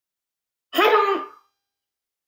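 A person clearing their throat once, a short vocal sound of under a second.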